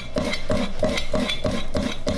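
Chef's knife chopping a carrot on a wooden cutting board, in a fast even rhythm of about five cuts a second.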